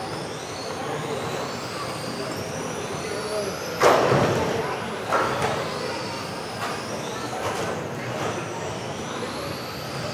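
Several RC touring cars racing, their motors whining high and overlapping, the pitch rising and falling as they accelerate and brake. A sharp loud knock about four seconds in, with smaller knocks later.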